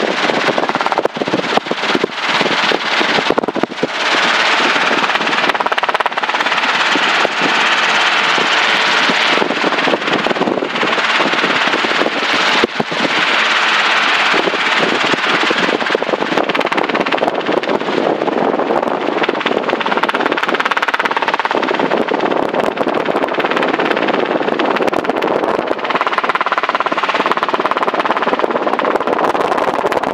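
Light helicopter in flight heard from inside the cabin: steady engine and rotor noise with a rapid, regular chop from the main rotor blades.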